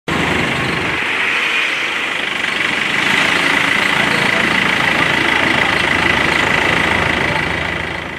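Pickup truck engine idling, a loud steady noise with a thin high whine running over it.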